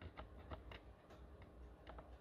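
Near silence with a few faint, scattered clicks and ticks: handling noise from a fingertip pressing and shifting on a router's circuit board.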